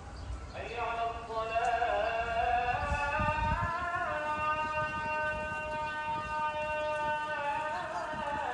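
A solo voice singing a slow melody: it enters about half a second in with a wavering phrase, then holds one long steady note for about three seconds before moving again near the end. A low rumble underneath fades out partway through.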